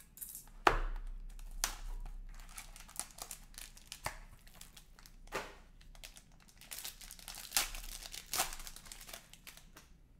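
An Upper Deck Black Diamond trading card box being opened by hand, with crinkling and tearing of its packaging and a run of sharp cardboard snaps. The loudest snap comes about a second in.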